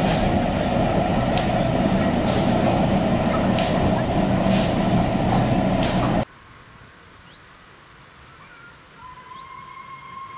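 Class T 444 diesel locomotive and a silo wagon rolling slowly past close by, the engine running steadily with sharp wheel clicks on the track about once a second. About six seconds in the sound gives way abruptly to quiet outdoor sound with birds and a faint steady tone near the end.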